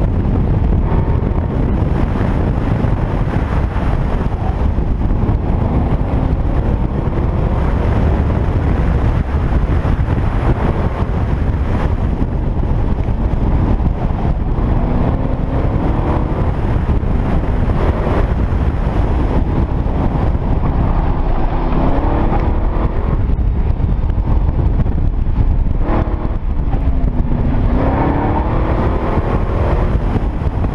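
Corvette V8 engine pulling hard and backing off over and over, its pitch rising and falling as the car accelerates and slows through an autocross course, under heavy wind buffeting on the microphone.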